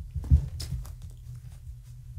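A long-haired tabby cat landing with a thump on a blanket-covered floor about a third of a second in, after leaping at a wand toy, followed by a few soft scuffs and rustles of paws on the blanket.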